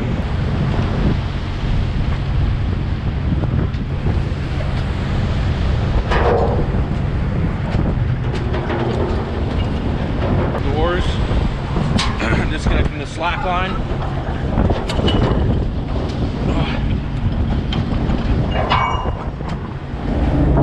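Steady low drone of a stern trawler's engine and deck machinery, with wind buffeting the microphone. Short wavering calls or voices come and go over it.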